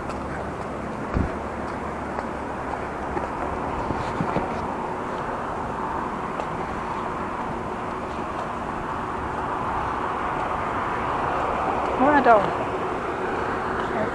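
Road traffic noise on a wide city street: a steady hiss of passing cars that slowly swells toward the end, with a single low thump about a second in.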